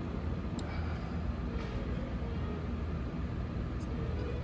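Steady low background rumble of a large room, like ventilation running, with a couple of faint ticks.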